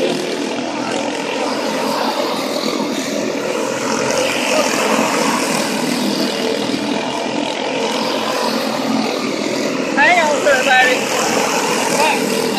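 Several quarter midget race cars' small Honda engines running together as the pack laps the oval, a steady drone. About ten seconds in, a voice shouts over it.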